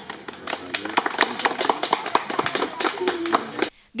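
A group of people applauding, many hands clapping irregularly, with faint voices underneath; the clapping stops abruptly near the end.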